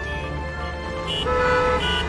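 Car horn honking in stalled traffic, one held blast starting a little over a second in and lasting about half a second, over a film score with a steady low rumble of traffic beneath.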